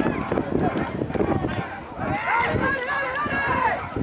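Several people shouting at once across a football pitch: players and sideline voices calling out, swelling into a denser burst of shouts in the second half, with a few sharp knocks among them.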